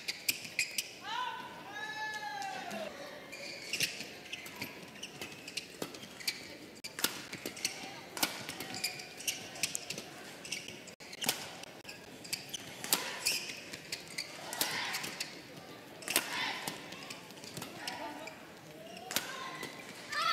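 Badminton rallies: racket strings striking a shuttlecock again and again, each hit a short sharp crack, often less than a second apart. Near the start there is a short squeak that rises and then falls, and voices come through later on.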